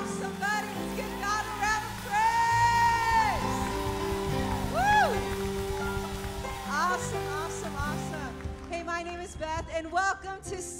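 Worship music: a steady sustained keyboard pad with a voice singing or calling out over it in long notes that swell and slide up and down, one held for over a second. Busier, talk-like voice sounds come in near the end.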